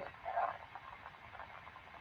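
Faint crackling pops from a Backyard Brains SpikerBox amplifier's speaker: the firing of sensory neurons in a cockroach leg, each pop a nerve spike set off as a probe touches a hair on the leg.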